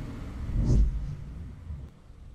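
A deep rumbling boom with an airy whoosh over it, swelling and fading about three-quarters of a second in, above a low steady rumble. It is an edited sound effect for a car montage.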